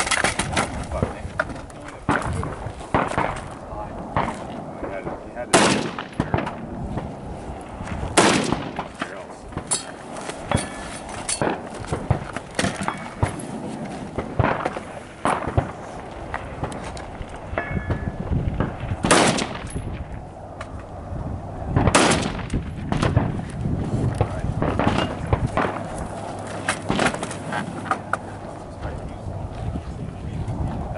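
Gunshots from a shooter firing at distant targets: four loud reports spread irregularly several seconds apart, with many fainter shots and clicks between them.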